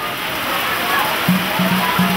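Torrential rain falling in a steady, dense hiss. From about halfway in, a held pitched note sounds over the rain.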